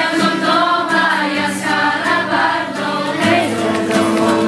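A group of voices singing a song together, continuously and choir-like.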